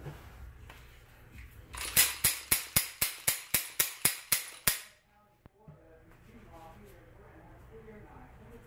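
SCCY CPX-1 9mm pistol's slide being worked back and forth by hand on the freshly cleaned and oiled gun: a quick, even run of about a dozen sharp metallic clicks, about four a second, that starts about two seconds in and stops near the five-second mark.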